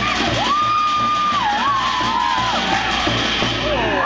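Live drumming for a fire dance: a steady drum beat, with a long, high, held shouted call and whoops gliding over it, the longest call starting about half a second in.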